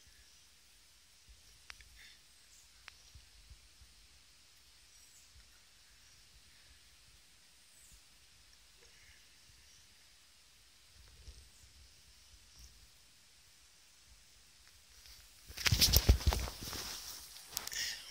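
Near silence with a few faint ticks, then about fifteen seconds in a loud rustling, buffeting noise for about two seconds as a handheld phone is moved.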